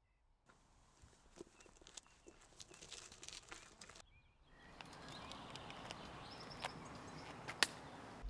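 Quiet rural outdoor ambience: a faint steady hiss with scattered light scuffs and clicks, and a few faint bird chirps. A sharp click comes near the end.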